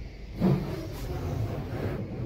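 Self-service car wash wand spraying water against the car's windows and body, heard from inside the cabin as a steady muffled rush, with a louder surge about half a second in.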